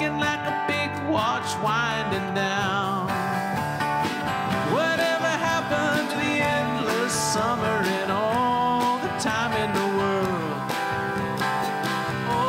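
Live country-folk band playing an instrumental break: acoustic guitar, bass and drums, with a lead line of bending, wavering notes over them and a cymbal crash past the middle.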